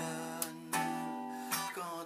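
Acoustic guitar strummed slowly, its chords ringing on between a few strokes.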